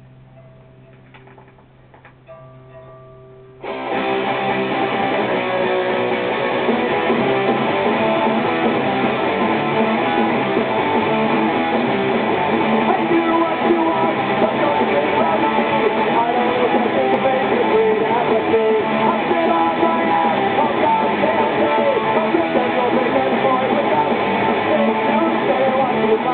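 Electric guitar played through an amplifier: a few quiet single notes over a steady amp hum, then about four seconds in loud punk rock strumming starts abruptly and keeps going.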